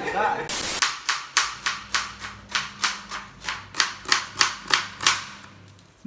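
Kitchen knife slicing a red onion on a plastic cutting board: quick, even knife strokes against the board, about four a second, stopping near the end.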